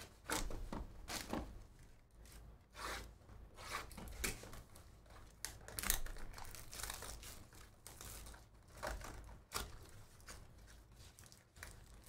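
Cardboard trading-card box being torn open by hand, in short irregular bursts of ripping and rustling card stock, with crinkling of the foil pack wrapper inside.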